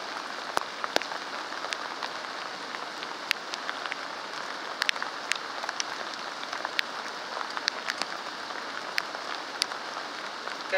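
Steady rain falling, with scattered sharp ticks of single drops striking close by.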